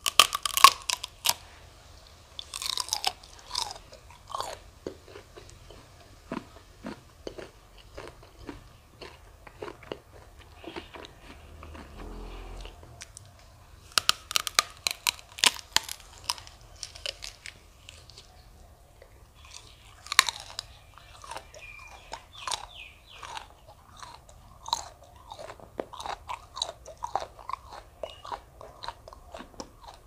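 A person biting into and chewing a raw prickly pear cactus pad close to the microphone: crisp crunching bites, the loudest right at the start and more a few seconds in, around the middle and about two-thirds through, with steady wet chewing between.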